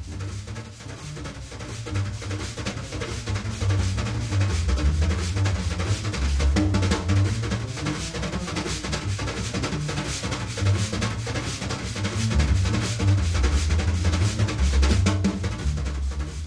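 Wire brushes on a snare drum playing the Gallop, a fast-tempo jazz brush pattern: a dense, even stream of quick sweeps and taps that grows louder over the first few seconds. A low bass line steps from note to note underneath.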